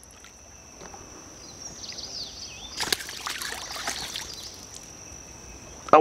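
Shortnose gar thrashing and splashing at the water's surface on a fishing line as it is pulled to the bank, loudest about three seconds in.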